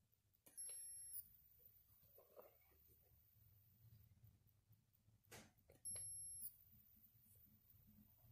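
Near silence: room tone, broken twice by a short, faint high-pitched electronic whine lasting about half a second, once about a second in and again about six seconds in.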